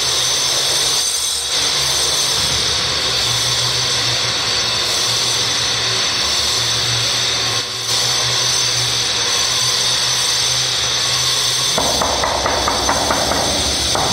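A steady hiss-like noise runs throughout. From near the end, a quick run of light taps sounds as a marble stair tread is tapped down with a hammer handle to bed it into the mortar underneath.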